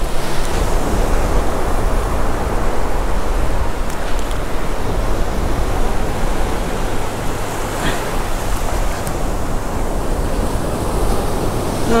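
Ocean surf washing steadily up the beach, an even rushing noise with a low wind rumble on the microphone.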